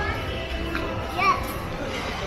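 Young girls calling out while playing, with a brief high-pitched cry about a second in, over the hubbub of a large indoor hall and background music.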